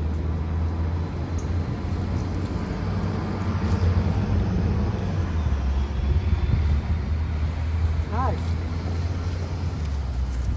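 Steady low rumble of road traffic from a nearby street, with faint voices in the background.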